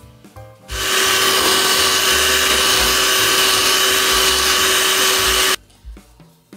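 Electric hand mixer running at one steady speed, a constant motor whine as its beaters blend cake batter. It starts about a second in and cuts off suddenly near the end.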